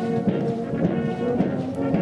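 Brass band playing held chords of sustained notes that change a few times.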